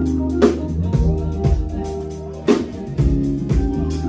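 Live band playing: drum kit, bass guitar and keyboard, with a sustained low bass line and a few sharp drum hits.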